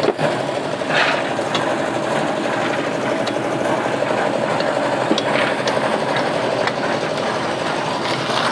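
A small engine running steadily at an even pace, with a few short clicks and scrapes over it.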